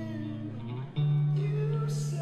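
Guitar played live: a low chord rings on, then a new, louder chord is struck about a second in and sustains.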